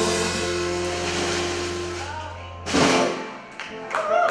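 Live rock band with electric guitar, electric bass and drums holding a final sustained chord to end a song. A loud final hit comes just under three seconds in, after which the sound dies away.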